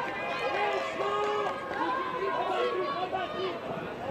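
Several distant voices calling out and chattering across an outdoor playing field, overlapping shouts from players and the sideline.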